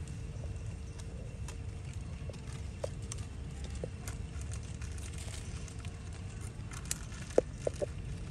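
Steady low outdoor rumble with scattered light ticks, then a few sharp clicks near the end as a macaque steps over dry leaf litter.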